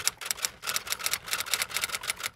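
Typewriter sound effect: a rapid, slightly irregular run of key clacks, several a second, timed to a title being typed onto the screen letter by letter.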